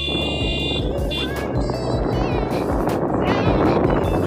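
Background music over the steady rush of wind and engine noise from a moving motorcycle.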